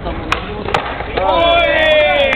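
Skateboard on a flat court: two sharp clacks of the board about half a second apart in the first second, like a tail pop and a landing. They are followed by a long, loud shout from the onlookers, falling slightly in pitch.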